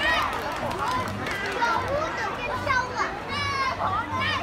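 Many children's voices chattering and calling out at once, with one long high call shortly before the end.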